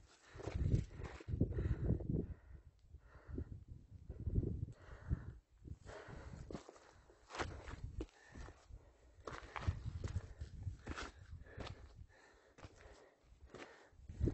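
Hiking footsteps crunching and scraping on a steep trail of loose volcanic rock and gravel, with sharp clicks of stones under the boots. Low rumbling bursts come and go between the steps.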